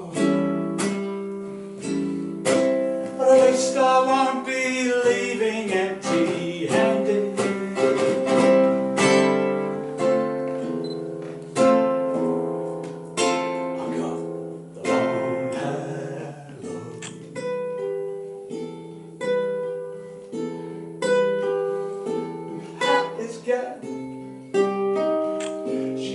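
Nylon-string cutaway acoustic guitar played fingerstyle: an instrumental passage of single plucked notes and chords over held bass notes, each note starting sharply and fading.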